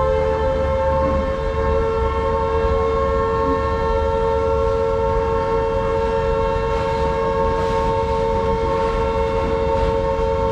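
A train horn held as one long, steady two-note chord over the low rumble of loaded open freight wagons rolling past.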